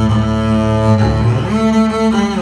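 Double bass with gut strings played with the bow: sustained low notes, one sliding up in pitch about one and a half seconds in.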